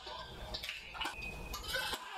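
Badminton court sounds: a few sharp racket-on-shuttlecock hits and short squeaks of court shoes on the mat, over crowd noise.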